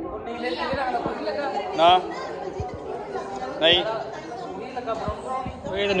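Several people talking over one another in casual group conversation, with a few voices rising louder at moments.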